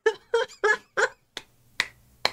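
A man laughing in a few quick bursts, then clapping his hands, with sharp claps starting about halfway in.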